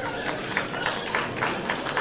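Audience clapping in a hall: a patter of irregular hand claps.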